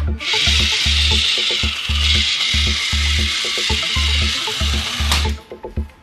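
Small electric motor and plastic gears of a remote-control transforming toy car, a steady whir for about five seconds as the robot rolls across the table, stopping with a click near the end. Background music with a regular beat plays throughout.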